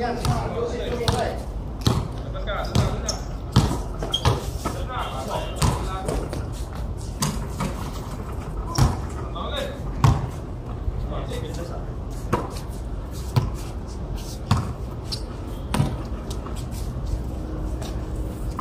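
A basketball bouncing on a concrete court in a pickup game: dribbles and bounces come as sharp thuds at irregular intervals, with players' voices calling out between them.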